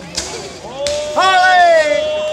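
Sharp cracks of correfoc fireworks, two in the first second, with a long steady high-pitched tone starting about a third of the way in and holding to the end, joined past the middle by a second tone that slides down.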